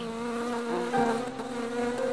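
Cartoon bee buzzing sound effect: a steady, even drone at one pitch.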